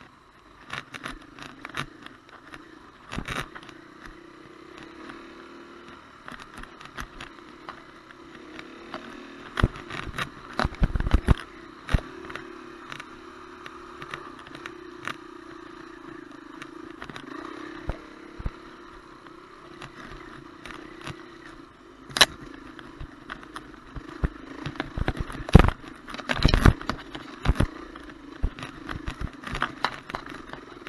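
Dirt bike engine running as the bike is ridden along a rough dirt trail, heard from a camera mounted on the bike, with frequent sharp knocks and rattles as it bounces over ruts and bumps.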